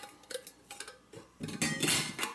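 Light clicks and taps of stainless steel stove parts being handled, then a short clatter of metal on metal near the end as the inner fire chamber and its flange are set onto the outer pot.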